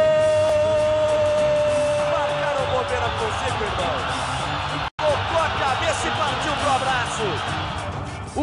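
A TV football commentator's long drawn-out goal shout, held on one note for about three seconds and slowly falling, over the noise of a large stadium crowd. After a brief drop-out nearly five seconds in, the crowd noise goes on with other voices in it.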